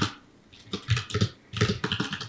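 Typing on a computer keyboard: two quick runs of keystrokes, the first starting about two-thirds of a second in.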